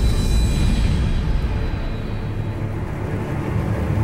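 Music with a deep rumbling whoosh from a logo-reveal sound effect. Its bright top end fades away over a few seconds, leaving the low rumble.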